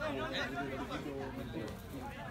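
Indistinct chatter of several spectators' voices talking over one another, a little louder in the first second.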